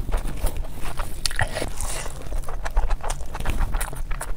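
Close-miked chewing of a mouthful of biryani and curry: a dense, irregular run of wet mouth clicks and smacks.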